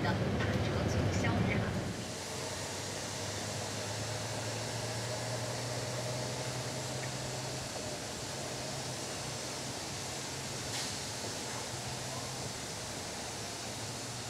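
Low rumble of a moving bus heard from inside the cabin, which drops at about two seconds to a steady, quieter background hum of distant city traffic.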